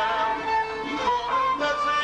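Kurdish traditional folk music: a melodic instrumental passage of long, sliding notes.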